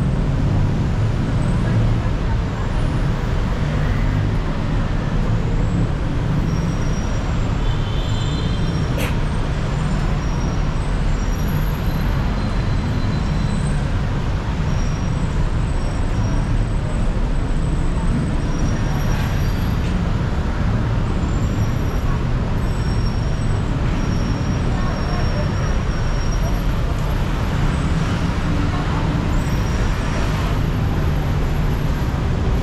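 Steady road traffic noise from a busy city street: a continuous low rumble of cars, buses and motorbikes, heard from an elevated walkway above the road. Faint short high chirps turn up here and there, and there is one brief click about nine seconds in.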